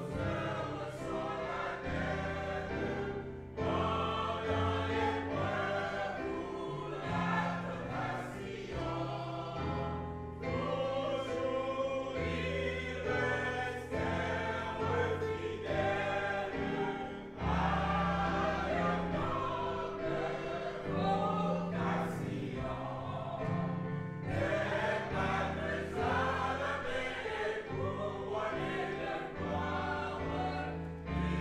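Congregation singing a hymn together, over an accompaniment that holds long, low bass notes changing every second or two.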